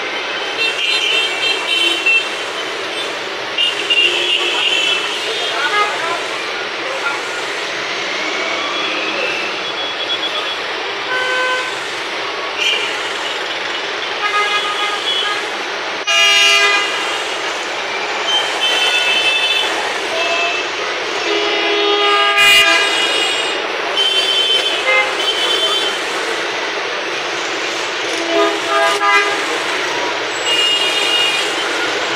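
Busy street junction traffic: motorcycles and cars running, with frequent short horn toots and two longer, louder horn blasts about 16 and 22 seconds in. Voices are in the background.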